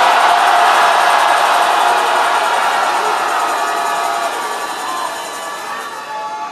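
A large congregation shouting "Jesus" and cheering together, a loud massed roar of voices that slowly dies down over the next few seconds.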